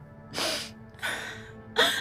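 Two short, sharp intakes of breath from a woman, over quiet background music.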